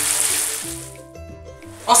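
Cherry tomatoes and basil sizzling in hot oil in a frying pan, the sizzle fading out within the first second. Soft background music plays underneath and then carries on alone.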